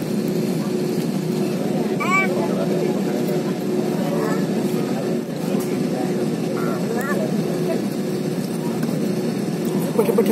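Jet airliner cabin noise while taxiing: the engines' steady hum at an even level, with a held tone under it, heard from inside the cabin.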